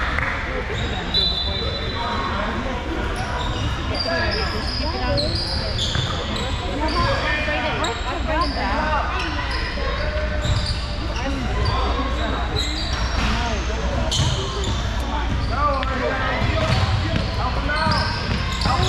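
Basketball game on a hardwood gym court: the ball bouncing, many short high-pitched sneaker squeaks, and indistinct players' and spectators' voices echoing in the large hall, over a steady low rumble.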